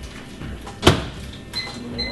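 Over-the-range microwave oven door pushed shut, latching with one sharp click just under a second in, followed by a high keypad beep near the end as the cooking time is entered.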